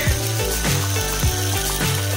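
Background pop music with a steady kick-drum beat and bass. Under it, a small brushless motor drives the ornithopter's plastic reduction gearbox with a light, ratchety gear whir.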